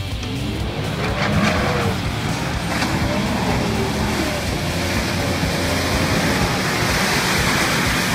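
A 4WD's engine revving up and down repeatedly as it drives through deep muddy ruts, with mud and water splashing against it, louder towards the end. Music plays underneath.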